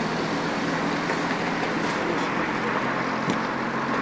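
A car engine idling steadily, with a steady low hum.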